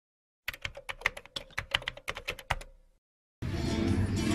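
A quick run of sharp clicks like typing on a keyboard, lasting about two seconds and fading out. About three and a half seconds in, live music with plucked strings starts suddenly.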